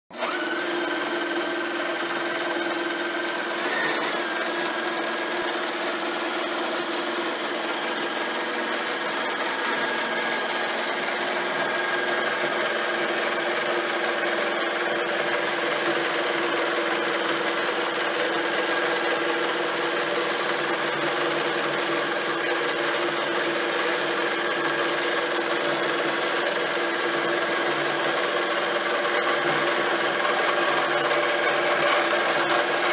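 Domestic sewing machine on a quilting frame running steadily, free-motion stitching a stipple pattern.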